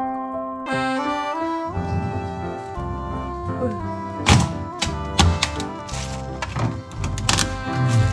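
A series of sharp thunks of a kitchen knife chopping through a crab onto a wooden cutting board, the loudest about four seconds in, over background music.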